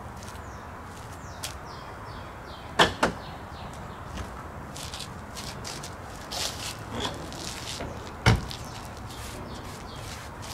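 Latches and hinges of a C4 Corvette's manual convertible top clunking as the lid over the folded top is opened and the top is pulled up: two loud knocks, one about three seconds in and one near the end, with lighter clicks between.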